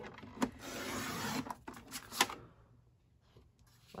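Sliding-blade paper trimmer's cutting head drawn down its rail, slicing a sheet of patterned paper: a scraping rasp lasting about a second and a half, followed by a few sharp clicks, the loudest a little after two seconds in.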